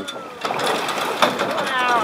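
A capsized small sailboat swinging back upright, with water splashing and pouring off its hull, sails and rigging in a noisy rush from about half a second in. Excited voices of onlookers break in over it near the end.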